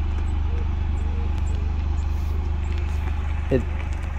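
Toyota GR Yaris's turbocharged three-cylinder engine running at low revs as the car pulls slowly away, a steady low drone.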